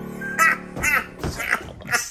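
The last chord of a boogie-woogie piano tune fading out under a run of about five short, squawky calls in quick succession, about half a second apart.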